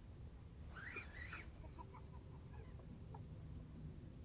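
Faint outdoor quiet over a low rumble, with a short distant bird call about a second in, followed by a few faint chirps.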